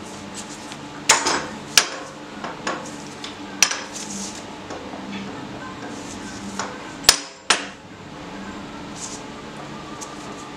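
A few sharp metallic knocks and clinks as a loosened aluminium motorcycle swingarm in a bolted welding jig is struck and worked on a steel welding table, to knock it straight after it rocked on the flat table. The loudest two knocks come close together about seven seconds in, over a steady low hum.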